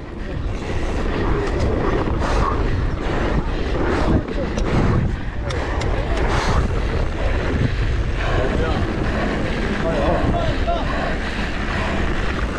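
Wind rushing over the microphone and tyre noise from a downhill mountain bike running fast on a dirt trail, with scattered knocks and clatter as the bike goes over bumps.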